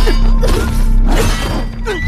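Sword blades clashing, several sharp metallic clangs with ringing in quick succession, over a loud dramatic film score.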